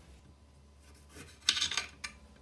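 Kitchenware being handled: a short scrape about one and a half seconds in, after a quiet start.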